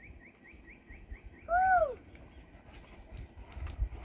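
A small bird sings a run of quick rising chirps, about four a second, that stops about a second in. Then comes one loud animal call, about half a second long, that rises and then falls in pitch.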